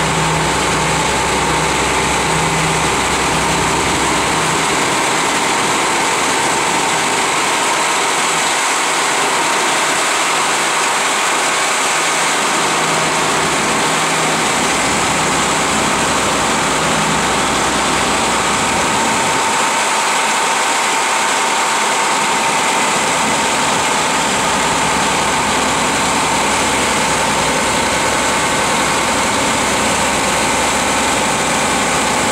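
Versatile 2375 four-wheel-drive tractor's Cummins diesel engine running steadily at close range, with a steady high whine over the engine noise.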